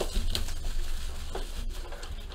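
Cardboard hobby box and its foil-wrapped pack of 2016 Panini Spectra football cards being handled, rustling and scraping with a few light clicks as the pack is slid out of the box.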